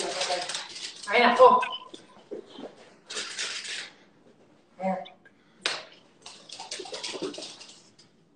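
BMX bike ridden through a flatland combo on a concrete floor: stretches of tyre scuffing and light metal clicks from the bike, with a man's laughter and short wordless shouts in between.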